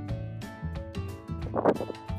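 Background music with plucked, guitar-like notes over a bass line, with a brief louder burst about one and a half seconds in.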